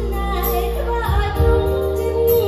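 A woman singing a waltz with a live band, over sustained bass notes.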